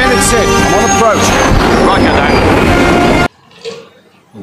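Animated-film soundtrack: loud music mixed with a jet plane's whine that rises then falls in pitch. It cuts off abruptly a little over three seconds in.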